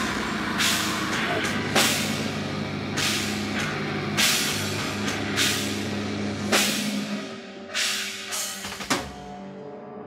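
Live rock band playing loud: bass guitar, distorted guitar and drum kit with a cymbal crash about every second and a bit. About seven seconds in the full band drops out, leaving three separate hits and a held low note that rings on.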